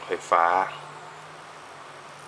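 A man's voice says one word, then steady room noise: an even hiss with a faint low hum underneath.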